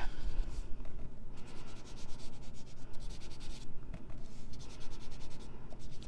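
Sponge dauber rubbing across embossed paper, a run of irregular scratchy strokes with short pauses, as white craft ink is brushed lightly over the raised shells.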